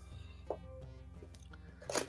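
Faint background music under two soft handling sounds of a cardboard box flap being opened: a small click about half a second in and a slightly louder one near the end.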